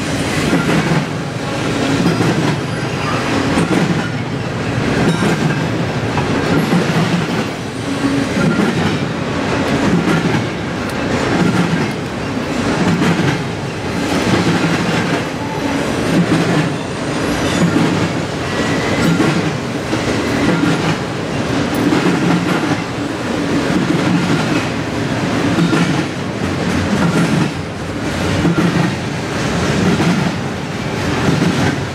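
Double-stack intermodal container well cars of a freight train rolling past, a steady rumble with wheels clicking over the rail joints. The sound swells and fades every second or two as each car goes by.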